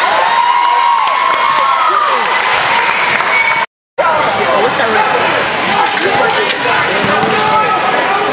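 Basketball game sounds on a hardwood court: sneakers squeaking in many short curving squeals and a basketball bouncing, over the voices of players and spectators. The sound drops out completely for a moment near the middle.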